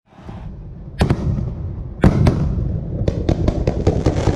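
Fireworks display opening: a low rumble of firing, a loud bang about a second in and another about two seconds in, then a rapid string of sharp cracks near the end as ground fountains and comets fire.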